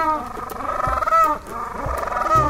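King penguins calling: loud, trumpet-like calls whose pitch wavers rapidly, several in a row, each under a second long.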